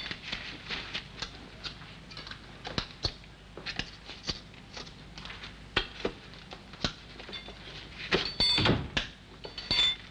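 Irregular light clicks and metallic clinks of spoons used as tyre levers on a bicycle wheel rim, with a louder clatter about eight seconds in.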